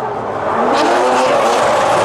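Two drift cars sliding together in a tandem drift, engines held at high revs with the pitch wavering as the throttle is worked, over the steady hiss of tyres spinning and sliding on asphalt. The tyre noise grows louder a little under a second in.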